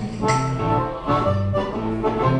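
Blues harmonica playing a held, reedy fill over a guitar boogie shuffle with a steady repeating bass line; the harmonica comes in just after the start.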